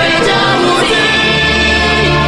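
Gospel worship music: voices singing long held notes together over a steady low bass.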